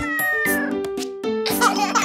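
A cartoon cat meows once, its pitch falling, over children's song music with held notes.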